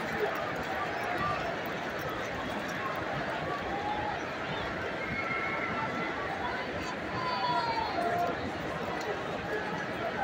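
Baseball stadium crowd: a steady hubbub of many distant voices, with a few individual voices or calls standing out faintly about four seconds in and again around seven seconds in.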